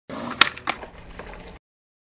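A skateboard rolling, two sharp clacks of the board about a third of a second apart, then more rolling that cuts off suddenly about one and a half seconds in.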